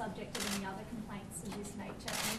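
Faint voices talking away from the microphones, with a few sharp camera-shutter clicks.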